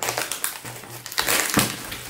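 Clear plastic shrink-wrap being torn and peeled off a small cardboard board-game box, crackling and crinkling irregularly, with the sharpest crackle about one and a half seconds in.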